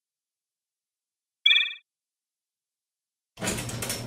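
A short trilling electronic ring about a second and a half in, then a few seconds of quiet until a steady mechanical whirr starts near the end as a cartoon roll-up garage door opens.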